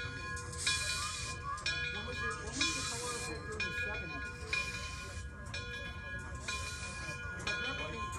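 Frisco 1630, a 2-10-0 Decapod steam locomotive, approaching slowly from a distance. Its steam exhaust hisses in bursts of just under a second, about every two seconds, over a low rumble.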